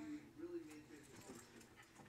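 Small dog whining in a few short, faint whimpers that rise and fall in pitch, the loudest about half a second in.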